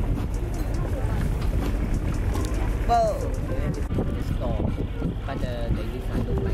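A steady low rumble with indistinct voices over it, and a short rising-and-falling vocal sound about three seconds in.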